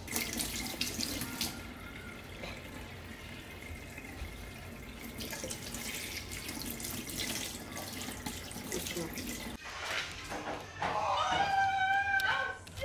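Kitchen tap running into a stainless steel sink with hands being washed under the stream; the water stops about ten seconds in. Near the end comes a short, louder, high-pitched sound.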